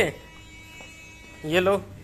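A faint, steady electrical hum for over a second, cut into near the end by a man's brief words.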